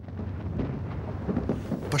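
Distant artillery fire heard as a continuous low rumble, with a few faint dull thuds in the middle.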